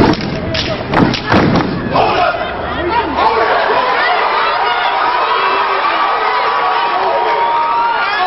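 Step team stomping and clapping in sharp, rapid unison strikes for the first two seconds or so, then voices cheering and shouting, with one long held note over the last three seconds.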